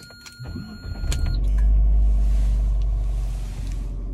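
Car engine starting inside the cabin: a low rumble builds about half a second in and settles into a steady running sound from about a second and a half. A steady high electronic tone stops just as the engine catches.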